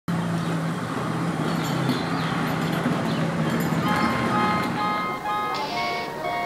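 Street sound with a steady engine hum for the first few seconds, then brass band music comes in about four seconds in.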